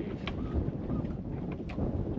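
Wind buffeting the microphone on an open boat on a lake, a steady low rumbling noise with a few faint clicks.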